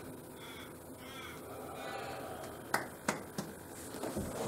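A crow cawing faintly, then three sharp clicks about a third of a second apart near the end.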